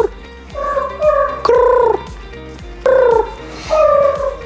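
Background music: short sliding melodic notes in separate phrases over a faint steady backing.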